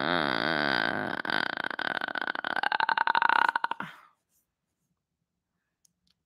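A long human burp, held for several seconds. Its pitch wavers, and over its second half it breaks into a rattling, croaking vibration before stopping about four seconds in.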